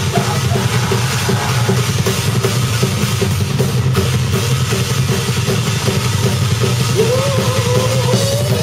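Live rock band playing loud and dense, the drum kit up front, on a rough, distorted recording. Near the end a pitched note begins sliding upward.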